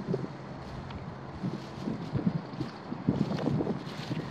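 Wind buffeting the microphone outdoors: a steady noisy rumble and hiss, with a few faint short irregular sounds over it.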